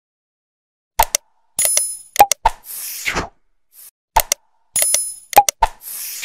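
Subscribe-button animation sound effect: sharp mouse clicks, a bell-like ding and a short whoosh. After about a second of silence the sequence plays through once and then repeats, about every three seconds.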